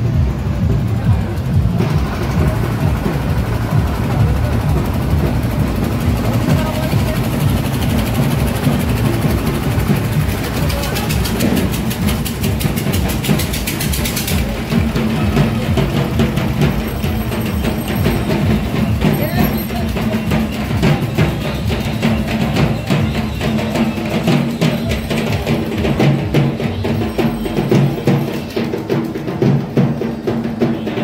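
Fast, steady procession drumming that runs without a break, mixed with music and the voices of a street crowd.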